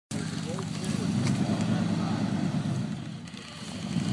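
Pickup truck engine running under load as it strains to drag a felled oak trunk, easing off near the end.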